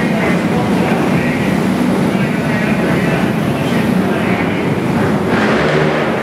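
Several racing kart engines running together at race speed, a loud steady mix of engine notes.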